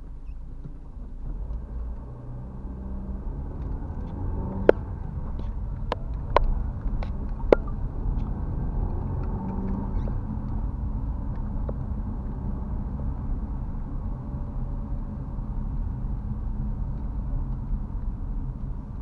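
A car's engine and tyre noise heard from inside the cabin, a low rumble that grows louder over the first few seconds as the car pulls away from a stop and then holds steady. A few sharp clicks sound between about four and eight seconds in.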